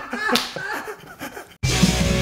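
A man laughing heartily, with one sharp smack about a third of a second in. About one and a half seconds in, the laughter cuts off and loud hardcore punk music with drums and guitar starts abruptly.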